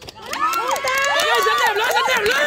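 Several voices shouting and calling out loudly at once, overlapping, starting about a third of a second in.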